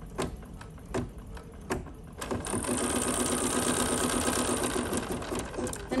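Computerized embroidery machine starting to stitch about two seconds in and then running at a steady, rapid stitch rate, after a few light taps of fabric being handled in the hoop.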